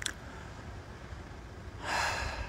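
A man breathing in: a short sharp intake at the start and a longer, louder inhale near the end, over a faint low rumble on the microphone.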